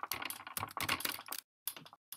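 Typing on a computer keyboard: a quick run of key clicks that stops about a second and a half in, followed by a couple of single key taps.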